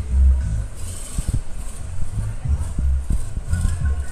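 Music played loud through a tractor-mounted high-bass system with twin 12-inch SEGA subwoofers and Sony 6x9 oval speakers. Deep bass beats hit about once a second and dominate, with a voice faintly over the top.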